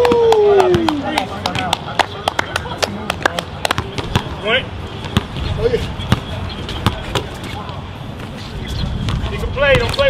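A basketball being dribbled on an outdoor court: irregular sharp bounces, with quick runs of bounces in places. A long falling shout of "oh" opens it.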